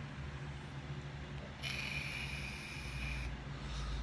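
A vape (e-cigarette) being drawn on: a hiss of air through the device lasting about a second and a half, starting about a second and a half in, over a steady low hum.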